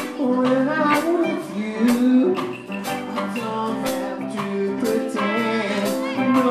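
A live band playing: drum kit hits at a steady beat under electric bass, with a voice singing through the PA.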